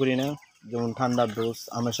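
A large flock of broiler chickens, about 25 days old, keeps up a continuous high chatter behind a man talking.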